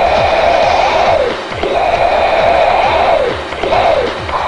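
Loud noise inside the Embraer AMX fighter's cockpit, heard over the intercom as the jet pulls up into a loop. There is a steady roar with a hissing whoosh that swells and fades about once a second and dips briefly three times.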